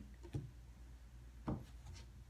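Tarot cards being handled on a tabletop: faint rubbing with two soft knocks, one shortly after the start and one about a second and a half in.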